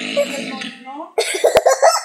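Cartoon character's voice played from a television: a yelled cry that slides down in pitch, then, just past a second in, a fast run of short rough coughing bursts.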